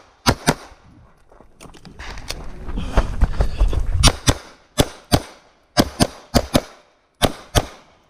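CZ Shadow 2 pistol fired in quick pairs of shots. There is one pair right at the start, then a low rumble for about three seconds, then five more pairs in fast succession, each pair a fraction of a second apart, which fits two hits per target.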